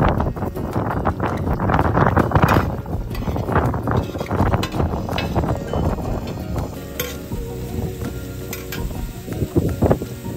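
Vegetables being stirred on a large flat iron griddle with a metal slotted spoon, with a few sharp metal clinks in the second half. Gusts of wind rumble on the microphone, loudest in the first half.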